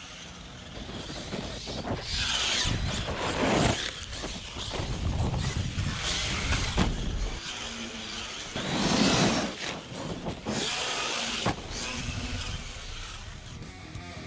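A 1/8-scale RC basher truck running and jumping: repeated surges of motor and tyre noise with wind on the microphone, and a couple of sharp knocks from landings.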